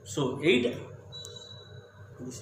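A man says one short word, then a faint high-pitched steady tone sounds for under a second, about a second in.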